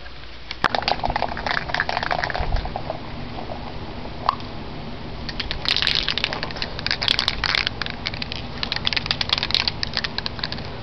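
Aerosol can of Krylon metallic silver spray paint hissing in several short bursts as coats are sprayed onto plastic car interior trim, with some clicking and crackling between passes.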